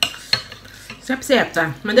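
Metal cutlery clinking against a glass bowl while noodles are stirred and lifted: two sharp clinks in the first half second, the second with a brief ring.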